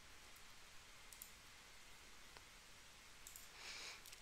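Near silence of room tone, with a few faint computer mouse clicks.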